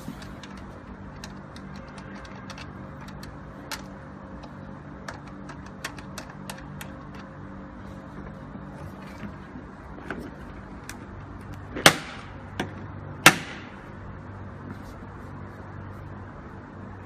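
Scattered small clicks and taps of test leads and clips being disconnected from the front panel of a portable overhead-line fault locator in a plastic hard case, then two sharp, louder knocks about a second and a half apart near the end.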